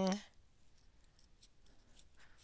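Small scissors faintly snipping through paper in a run of light, irregular snips.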